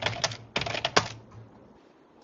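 Typing on a computer keyboard: a quick run of key clicks through the first second, then it dies away.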